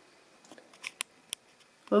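A few short, faint clicks, four of them spread over the middle second, in otherwise near quiet.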